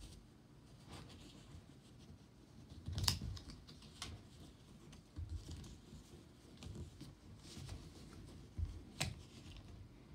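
Small cardboard accessory box and its insert being pried open and handled by toes: light scraping and rustling with scattered clicks, the sharpest about three seconds in and another near the end, as a coiled cable is pulled out.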